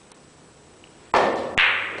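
Carom billiard shot: two loud, sharp clacks of cue and balls striking, about half a second apart, each ringing on briefly.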